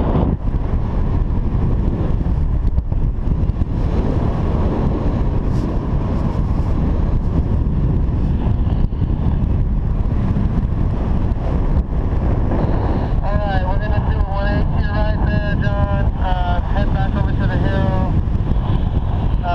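Wind rushing over the camera microphone of a paraglider in flight, a steady loud rumble. In the last five seconds a run of short, repeating pitched tones joins in.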